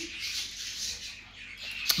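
A flock of pet birds keeping up a high, steady chirping twitter, with one brief sharp click just before the end.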